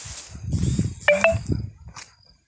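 Irregular low rumbling and thumping from wind and handling on a phone microphone carried through a field, with a brief high squeak about a second in.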